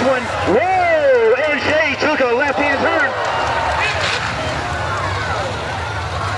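A voice speaking, words unclear, for about the first three seconds, over the steady low drone of a mud-racing truck's engine running through the bog pit.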